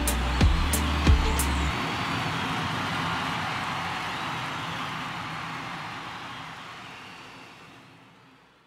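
Live funk band music ending on a few last heavy drum and cymbal hits, about one every 0.6 s, which stop about a second and a half in. A lingering wash of noise then fades steadily out.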